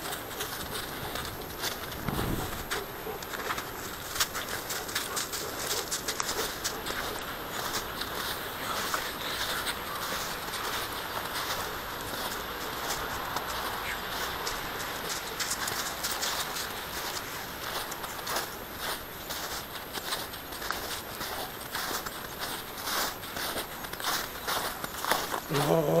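Footsteps crunching through thin snow with irregular crackles and rustling close to the microphone, and a dull thump about two seconds in.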